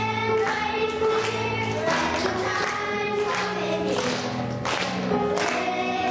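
A choir singing a song with instrumental accompaniment, in long held notes over a steady bass line.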